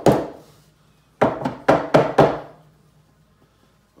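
A mallet tapping the glued, nailed finger-joint corners of a wooden beehive box to seat them: one strike, then about a second later a quick run of five strikes at about four a second, each with a short wooden ring.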